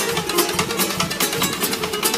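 Carnival comparsa's classical guitars strumming chords together in a fast, even rhythm during an instrumental passage.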